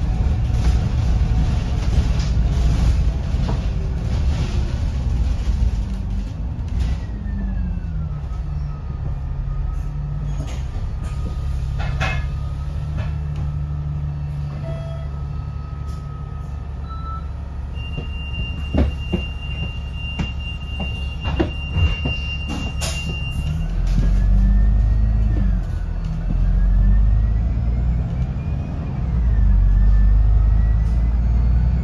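Alexander Dennis Enviro500 double-decker bus on the move, heard from the upper deck: the diesel engine drones low, its pitch falling about seven seconds in and climbing again near the end, with a thin drivetrain whine gliding up and down above it. Scattered rattles and clicks come from the body, and a steady high tone holds for about five seconds in the second half.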